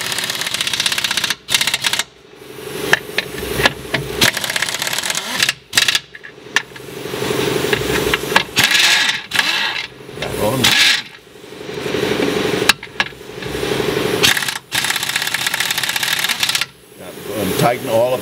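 Pneumatic impact wrench hammering in repeated bursts of a second or two with short pauses between, running the transmission mount nuts up tight.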